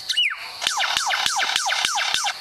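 Lyrebird singing its mimicry: one falling whistle, then a fast run of downward-sweeping whistles, each with a sharp click, about five a second, siren-like in its repetition.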